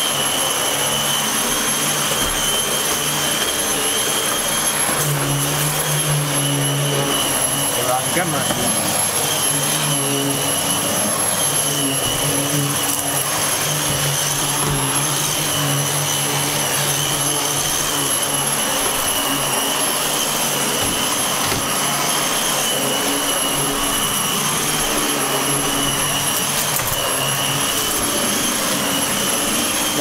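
Dyson DC15 upright vacuum cleaner running steadily: a high motor whine over the rush of air, with a lower hum that comes and goes.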